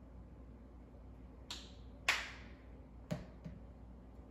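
A few sharp clicks and taps of makeup containers being handled as the moisturizer is picked up and opened, the loudest about two seconds in, over quiet room tone.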